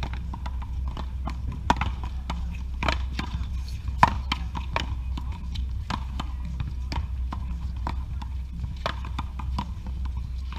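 Paddleball rally: a rubber ball is struck by solid paddles and hits a concrete wall, giving sharp, irregular knocks. The loudest knock comes about four seconds in.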